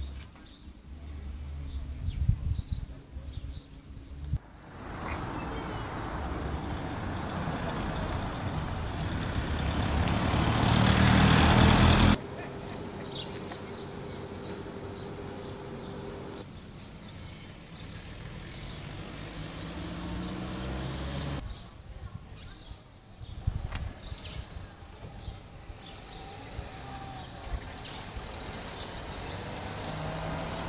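A passing motor vehicle grows steadily louder over several seconds, then cuts off abruptly about twelve seconds in. Lower street noise follows, and in the second half small birds chirp.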